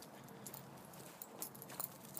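Quiet background with a few faint clicks and light rustles, the clearest near the end.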